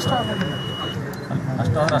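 An electronic voting machine's steady, high single-pitch beep, the tone it gives when a vote is recorded, cutting off about halfway through, with men talking over it.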